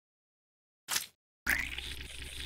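Syringe sound effects: a short sharp pop about a second in as the needle goes into the wound. Then, about halfway through, a wet sucking draw of fluid starts with a brief rising squeak and runs on with a fine, rapid crackle.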